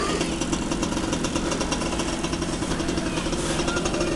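Small dirt bike engine running steadily.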